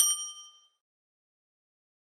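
A single bright bell ding, the notification-bell sound effect of a subscribe-button animation, ringing out and dying away within about half a second.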